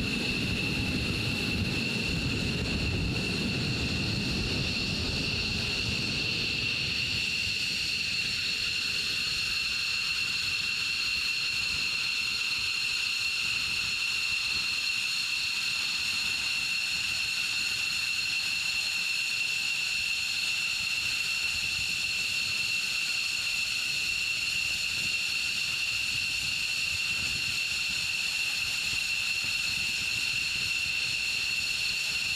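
F-15E Strike Eagle's twin jet engines running steadily at idle: a high whine of steady tones over a hiss. A low rumble under it fades out in the first several seconds as the jet taxis to a stop.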